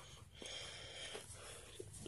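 Faint scratching of a graphite pencil on paper during drawing strokes, with a few light ticks.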